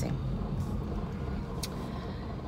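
Car engine idling, a low steady rumble heard from inside the cabin, with two faint ticks.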